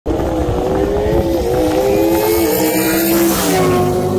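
Car engine pulling hard at high revs at highway speed, heard from inside a car with wind noise. Its pitch dips about three and a half seconds in, as at a gear change.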